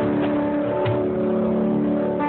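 Acoustic guitar chords ringing on with a cajon played by hand beneath them, including one low hit with a slap just under a second in.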